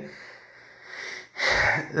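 A man's breath between sentences: a faint exhale, then a short, sharp, hissing intake of breath about one and a half seconds in.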